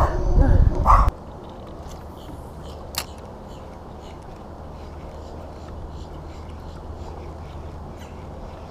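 A man laughing for about the first second, then a low steady rumble with one sharp click about three seconds in.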